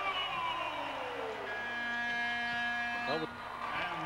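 Arena end-of-game horn sounding one steady, even tone for nearly two seconds as the clock runs out.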